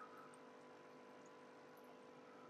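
Near silence with a faint, steady hum.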